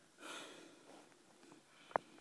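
A person's short, breathy exhale close to the microphone, then a single sharp click near the end.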